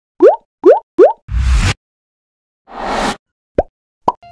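Animated-intro sound effects: three quick pops rising in pitch within the first second, then a noise burst with a low thud. After a short silence comes a swelling whoosh, then one last short rising pop near the end.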